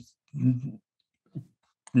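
A man's voice: a short, quiet spoken fragment or hesitation sound about half a second in, and a brief vocal sound about a second and a half in, with silence between.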